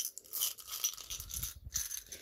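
Small plastic clay-extruder dies clattering as they are tipped from a hand into a clear plastic jar: a run of light, irregular clicks and rattles.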